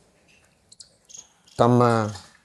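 A pause in a man's speech, holding a few faint, short, high-pitched chirps about a second in. His voice comes back, speaking Kannada, near the end.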